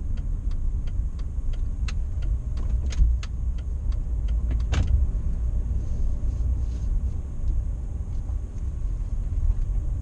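Minivan's engine and road noise heard inside the cabin while it drives through a parking lot: a steady low rumble. Through the first half a fast, even clicking of about three ticks a second runs over it, with one sharper click near the middle.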